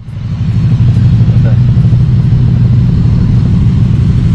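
Motorcycle engines running at low speed, a loud, steady, low engine note with fast, even firing pulses, as the bikes roll slowly across a fuel station forecourt.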